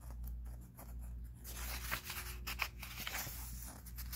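A hand rubbing and sliding across the paper pages of a book, a soft scratchy rustle with a few small ticks, over a low steady hum.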